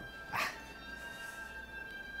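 Quiet background music with steady held tones, and one brief short sound about half a second in.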